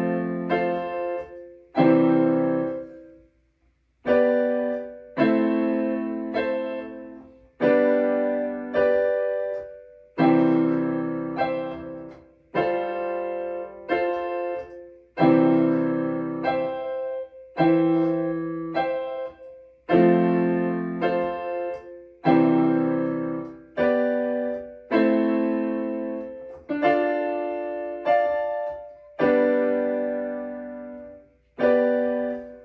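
Portable electronic keyboard on a piano sound playing a slow gospel piece in full chords. Each chord is struck and left to fade, about one every one to two seconds, with a short break about three seconds in.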